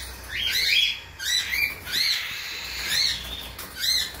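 Budgerigars chirping: a run of short, high chirps that rise and fall, coming in small groups of two or three through the whole stretch.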